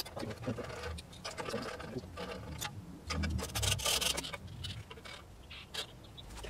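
Hand tools working metal on a bare Ford Barra engine: irregular metal clicks and scraping, with a louder rasping stretch a little past halfway.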